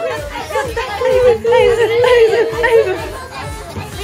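Several young women's voices talking and exclaiming over one another in lively, high-pitched chatter, loudest in the middle and easing off near the end.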